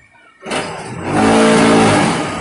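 Automatic fly ash brick making machine running: a loud, steady mechanical hum mixed with noise, starting about half a second in and at its loudest over the second half.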